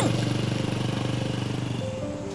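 Small motor scooter engine running with an even putter, fading steadily as the scooter rides away, then dropping out near the end.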